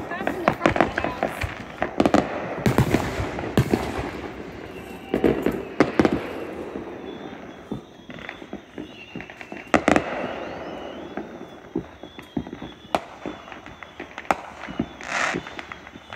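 Fireworks going off: an irregular run of sharp pops and cracks, with louder bangs about three seconds in and again near ten seconds.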